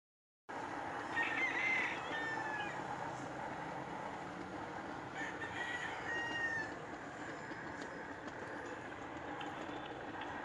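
A rooster crowing twice, about a second in and again about five seconds in, over the steady rolling noise of the hand-pushed rail trolley's wheels on the track. The sound cuts in abruptly half a second in.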